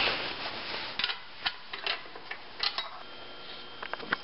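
Rustling handling noise at the start, then several irregular sharp clicks of a hand tool and metal parts as the second sheet-metal screw comes out of the snow blower's recoil starter cover.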